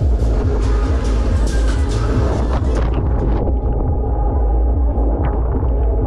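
Loud fairground ride music with a heavy bass, with the rumble of the spinning Mondial Shake R5 ride underneath. A high hiss fades out about three seconds in.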